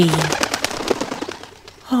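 Bird wings flapping, a rapid fluttering that fades out over about a second and a half.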